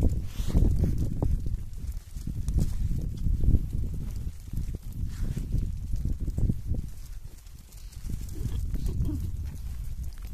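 Outdoor microphone noise: an uneven low rumble that swells and dips, with scattered small knocks.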